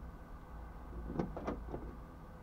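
A quick run of about four light knocks or clicks a little past halfway, over a low steady rumble heard from inside a parked car.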